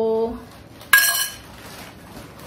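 A steel spoon set into a steel ghee pot: one metallic clink about a second in, ringing briefly as it fades.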